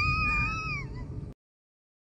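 A pet animal's long, high whining cry, wavering up and down in pitch, which ends about a second in; then the sound cuts off abruptly.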